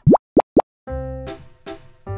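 Three quick rising 'bloop' sound effects in the first half-second, then cheerful background music with repeating chords starts just under a second in.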